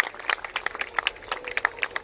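An audience clapping: scattered, irregular applause.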